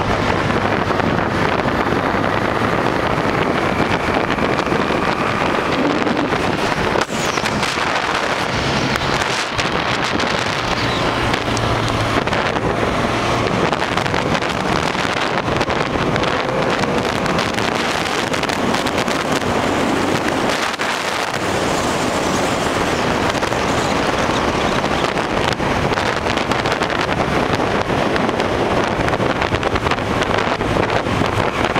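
Steady, loud wind noise buffeting the microphone of a camera held by a rider on a moving motorcycle, with the motorcycle's engine running low underneath at road speed.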